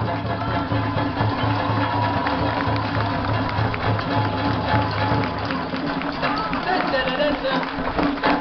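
Okinawan eisa folk music with hand drums struck by the dancing troupe, together with voices. A strong low bass drops out about five and a half seconds in.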